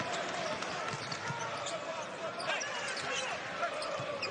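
Basketball being dribbled on a hardwood arena court, with short sneaker squeaks and the steady noise of the crowd.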